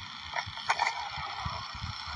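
Low, uneven rumble of handling and wind noise on a phone microphone carried while walking outdoors, with a couple of brief faint sounds about half a second in.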